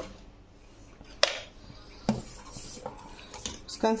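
Metal ladle knocking against a stainless steel saucepan while stirring soup: a sharp clink about a second in, another around two seconds, then a few lighter taps.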